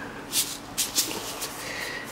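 A plastic bottle of sodium hydroxide being handled, a few short scuffing rustles as it is lifted and its screw cap is gripped.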